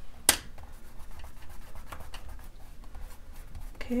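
A single sharp click about a third of a second in as a paintbrush is set down, then faint rubbing and small ticks of fingers smoothing glued tissue paper flat on a journal page to press out air bubbles.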